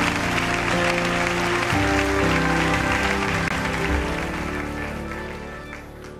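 A congregation applauding and cheering over live church music with sustained chords. The applause dies away over the last couple of seconds.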